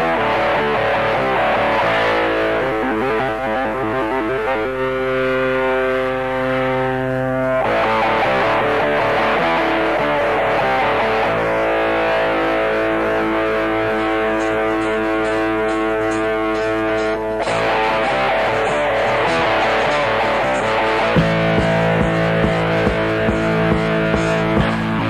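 Instrumental intro of a hard rock song: distorted electric guitar holding long, ringing chords that change every few seconds. About three seconds before the end, a bass line and a steady drum beat come in.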